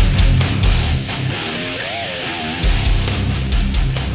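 Hard rock music with electric guitar and drums. About a second in, the drums and bass drop away, leaving a bending, wavering guitar line, and the full band comes back in about two and a half seconds in.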